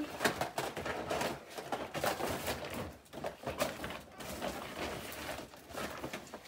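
Small objects and packaging being handled: irregular clicks and rustles.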